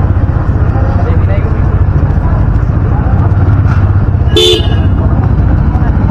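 Motorcycle engine running steadily at low speed, with a short vehicle horn toot about four and a half seconds in.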